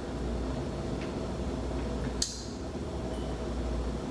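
Room tone: a steady low hum, with a single short click about two seconds in.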